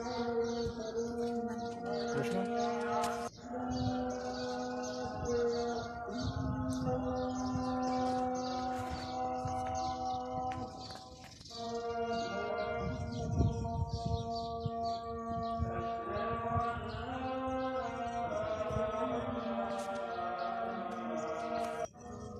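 Slow background music of long held notes that shift in pitch from time to time, with brief sharp breaks about three and eleven seconds in.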